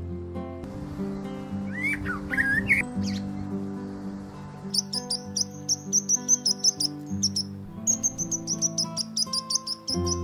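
Soft background music with held notes, with birds chirping over it. There are a few sliding whistled calls about two seconds in, then a fast string of high chirps from about five seconds in, with a short break near the three-quarter mark.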